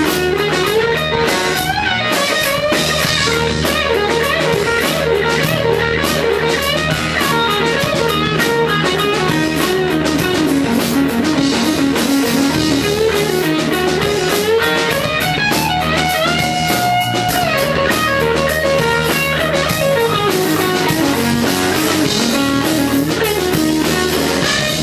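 Amplified Flying V electric guitar playing rock lead lines with string bends over a drum beat. One bent note is held for over a second about two-thirds of the way through.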